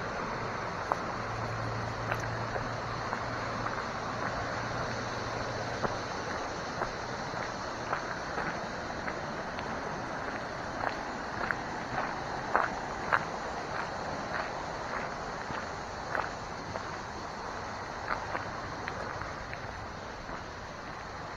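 Footsteps on a dirt and gravel trail, an irregular run of scuffs and crunches that is plainest in the second half. Underneath there is a steady rushing background, and a low hum for the first several seconds.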